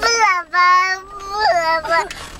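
A young child singing in a high voice, holding long notes that slide up and down in pitch, without clear words.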